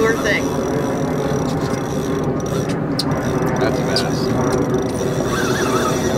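A boat's Yamaha outboard motor running steadily, a loud continuous drone under the fight with a hooked fish.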